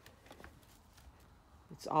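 Quiet room with faint rustling and a few light clicks; a woman starts speaking near the end.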